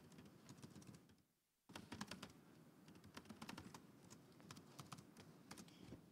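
Faint typing on a computer keyboard: scattered key clicks, with a brief pause about a second in.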